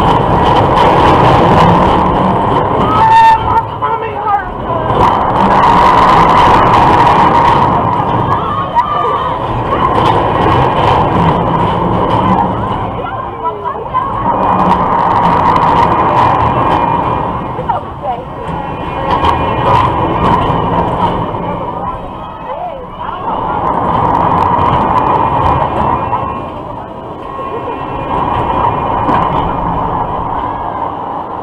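Fireball loop ride heard from on board the swinging car: a steady mechanical whine with rushing noise that rises and falls about every five seconds as the car swings back and forth along the looped track.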